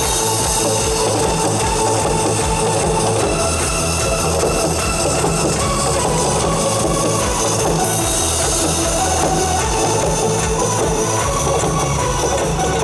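Fast janggu (Korean hourglass drum) drumming with cymbal crashes, played over a loud electronic dance-beat backing track with a steady, regular beat.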